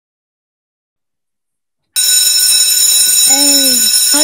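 Silence for about two seconds, then a loud alarm-like ringing made of several steady high tones starts suddenly and holds on. Children's voices begin under it near the end.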